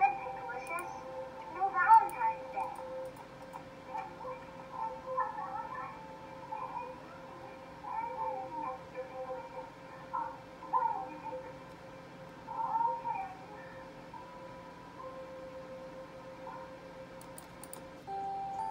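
A cartoon girl's voice crying, wavering wails that come in bursts through the first two thirds, the loudest about two seconds in, over steady background music that carries on alone near the end.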